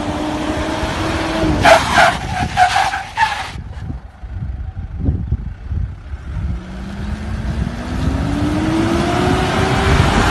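An SUV's engine running, with a run of choppy tyre squeals on pavement about two seconds in. Over the last few seconds the engine revs up steadily, rising in pitch as the vehicle accelerates.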